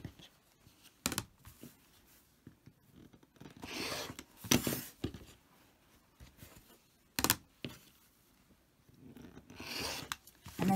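Cotton fabric and an acrylic quilting ruler handled on a cutting mat: short rustles and a few sharp knocks, the loudest a double knock about seven seconds in. Near the end a rotary cutter is pushed along the ruler, scraping through the fabric.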